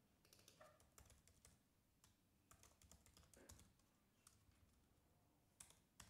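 Faint typing on a computer keyboard, quick keystrokes in two short runs, with a single sharper click near the end.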